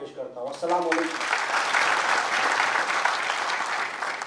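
An audience applauding, starting about a second in after a man's voice and continuing, easing slightly near the end.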